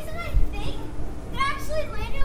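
Children's voices calling out and talking during backyard play, in two short bursts: one at the start and a longer one in the second half.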